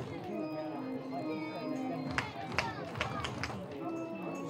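Music over a ballpark's public-address speakers, with crowd chatter from the stands. Three short sharp sounds come about two to three seconds in, roughly half a second apart.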